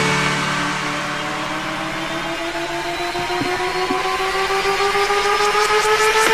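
Electronic riser in a dance backing track: a stack of synth tones slowly rising in pitch, building up to a drop, with a low hum fading out about two seconds in.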